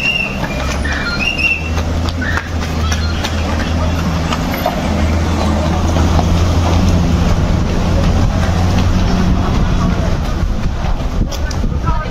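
A large BMW SUV rolling slowly past close by, its engine a steady low hum that grows louder toward the middle as it draws alongside, over the voices of a crowd.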